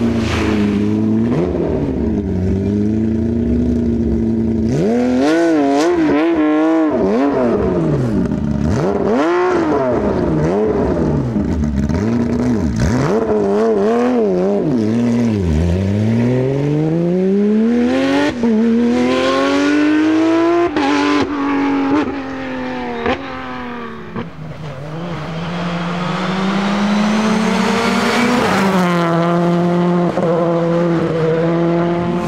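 Rally car engine revving hard, its pitch swinging quickly up and down with throttle blips and gear changes, then climbing steadily as the car accelerates away about halfway through, with a few sharp cracks. Another engine builds up over the last few seconds.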